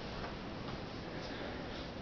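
Low, steady room hiss with faint ticking.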